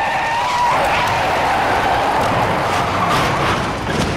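Car tyres screeching in a skid: a high squeal, strongest in the first second, fades into a rough, hissing scrape that runs on until just before the end.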